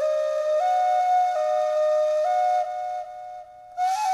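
Outro music: a slow, flute-like melody of held notes stepping up and down. It drops away for about a second near the end, then a new phrase begins.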